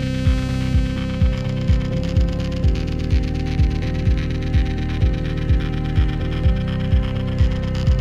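Background music: held synth chords over a steady kick-drum beat, about two beats a second.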